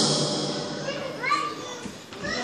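A child's voice making a couple of short, high, rising sounds about a second in, between fading speech and a lull.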